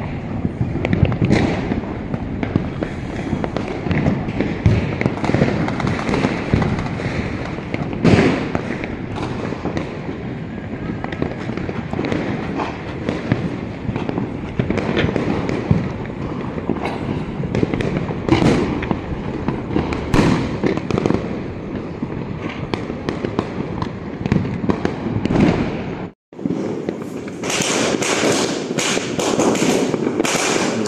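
Diwali firecrackers and fireworks bursting all around, a dense, continuous crackle of overlapping bangs and pops with no let-up. The sound drops out for a moment about 26 seconds in and resumes with sharper crackling.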